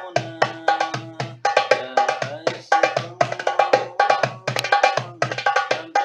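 Darbuka (goblet drum) played with the hands in a fast, even rhythm. Deep open bass strokes mix with sharp, high rim strokes, several a second.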